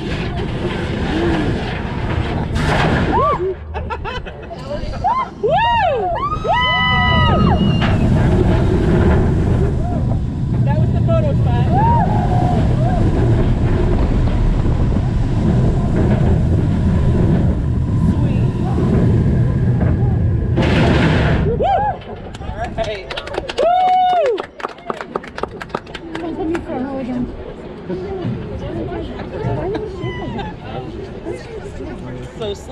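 Riders on the Yukon Striker dive coaster scream and whoop as the train goes over the drop. A loud, steady rush of wind and track rumble follows for about fourteen seconds. It cuts off abruptly as the train runs onto the brakes, and more whoops and laughter follow.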